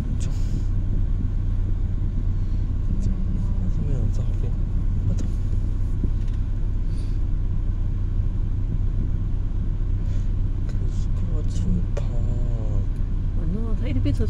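Steady low rumble of a car's running engine heard from inside the cabin, with faint voices now and then.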